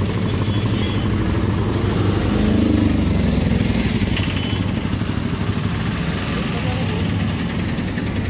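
Auto-rickshaw's small engine running as it drives slowly past close by, a steady low hum that grows a little louder about midway as it passes nearest, with voices in the background.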